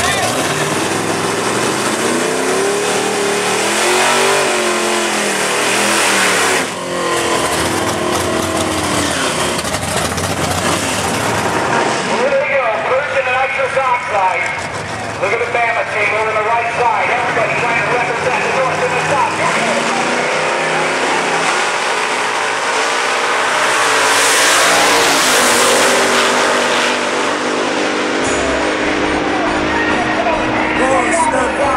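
Drag-race cars' small-block V8 engines revving in rising and falling sweeps at the start line, with crowd voices, then a longer full-throttle run about three-quarters of the way through as the cars launch down the strip.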